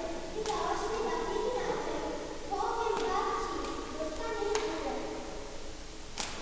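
Children's voices talking, with a few sharp taps or clicks about half a second, three seconds and four and a half seconds in.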